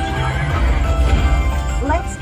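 Video slot machine playing its farm-themed game music with a pulsing bass, and a horse whinny sound effect rising in pitch near the end.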